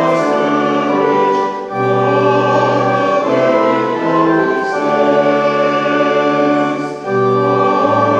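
Hymn sung by a congregation to pipe organ accompaniment: held chords that change every second or so, with short breaks between phrases about two seconds in and near the end.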